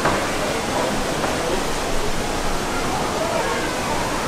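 Steady rushing noise like running water, with indistinct visitors' voices murmuring over it.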